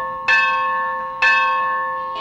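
Temple bell struck twice about a second apart, each stroke ringing on and slowly fading.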